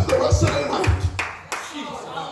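Church congregation clapping and calling out over music, with a few strong low thumps in the first second.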